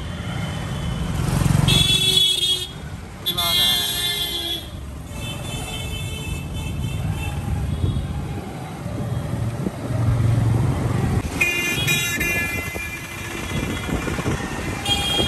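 Street traffic: motorcycle and rickshaw engines running, with vehicle horns honking several times, a long blast about three seconds in and another near the end.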